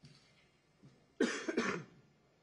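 A person coughing twice in quick succession, a little over a second in.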